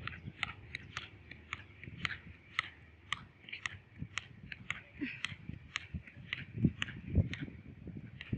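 A rapid, even series of short, sharp high chirps, about three a second, typical of a small animal's repeated call, over a faint steady hiss. Two dull thumps come near the end.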